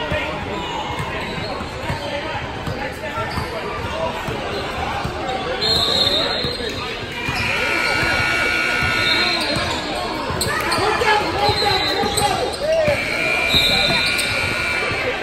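Basketball game sounds in a large echoing gym: a ball bouncing on the hardwood court amid players' footsteps and voices. High steady tones come and go about six seconds in and again near the end.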